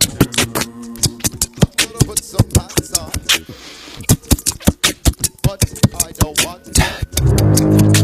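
Beatboxing into a microphone: a fast run of mouth-made drum hits, sharp clicks and snares mixed with short voiced sounds. About seven seconds in, a loud, sustained bass-heavy layer comes in.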